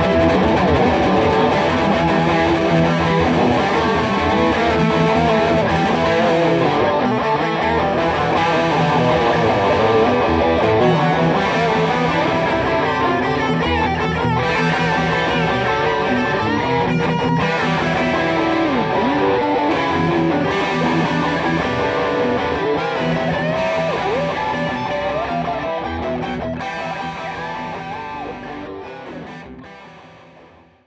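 Electric guitars playing together, chords and melodic lines layered over one another. The music fades out over the last several seconds.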